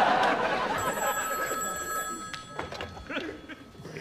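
A telephone ringing once, one steady electronic-sounding ring of about a second and a half starting near the one-second mark. Before the ring, studio audience laughter fades out.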